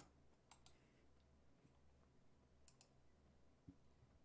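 Near silence, broken by a few faint computer clicks in two quick pairs, about half a second in and again near three seconds in.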